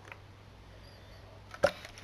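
Faint room tone with a low hum while a plastic water bottle is drunk from, then one short sharp click about one and a half seconds in as the bottle comes away from the mouth.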